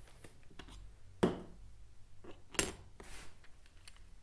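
Small metal fittings from an oil-cooler sandwich plate kit clinking as they are handled and the larger threaded adapter is fitted to the plate. Light ticks, with two sharper clinks about a second in and again past halfway.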